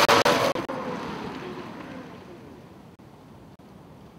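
Commuter Cars Tango electric car driving away after a fast pass, its motor whine and tyre noise fading over about two and a half seconds, the whine falling in pitch.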